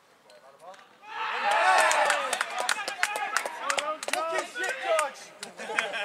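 Footballers shouting and cheering as a goal is scored, breaking out suddenly about a second in, loudest just after, with scattered sharp claps among the voices and dying down near the end.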